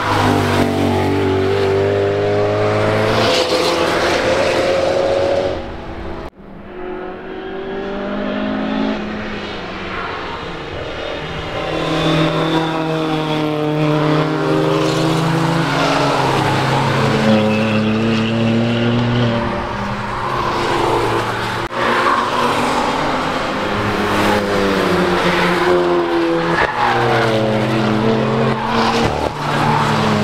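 Track cars passing one after another at speed, their engines revving up with rising notes and gear shifts. The sound drops out sharply about six seconds in, then more cars follow.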